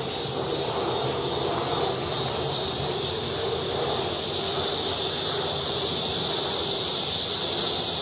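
Cicadas buzzing in a steady, high-pitched summer chorus that grows louder toward the end, over a low rumble of wind or distant traffic.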